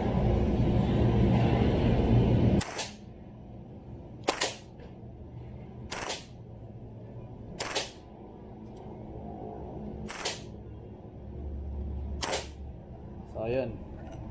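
G&G SMC9 electric airsoft gun firing on full auto in a loud continuous burst that cuts off about three seconds in, then six sharp single shots one and a half to two and a half seconds apart as it runs down to an empty magazine.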